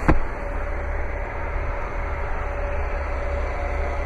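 A single thump right at the start as the carpeted cargo-floor panel over the spare tire well is lowered shut, then a steady low rumble and hiss of background noise.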